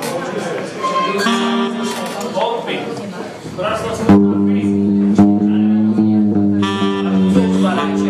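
Live band playing electric guitar and keyboard, with voices in the room. About four seconds in, a steady held chord comes in under the guitar notes.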